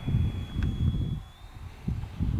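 Wind buffeting the microphone, with the thin, steady whine of a distant RC jet's 70 mm electric ducted fan (Rochobby Super Scorpion) above it, the whine rising slightly in pitch about one and a half seconds in.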